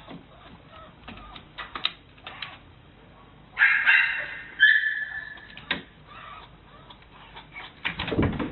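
Small dog clambering up a plastic baby gate, its claws and the gate's plastic mesh clicking and rattling. Two high whines in the middle, the second held steady for about half a second.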